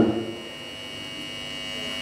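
Steady electrical hum with a thin, high, constant whine.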